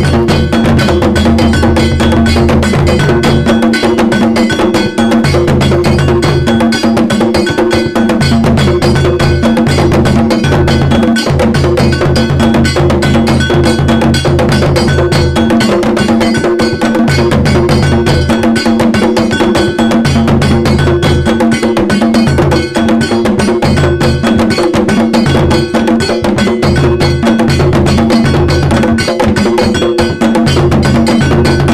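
Music with a metallic bell struck in a steady repeating pattern over percussion, and a bass line that drops out and comes back several times.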